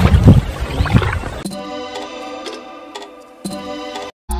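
Water sloshing and splashing as people wade through shallow water, in irregular low surges. From about a second and a half in, background music with held chord tones takes over.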